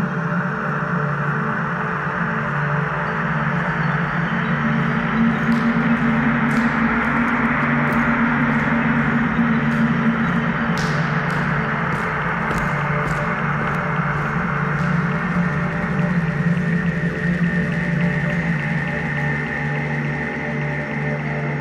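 Ambient downtempo electronic music: sustained low drone tones under a wash of synth pads, with scattered short clicks through the middle.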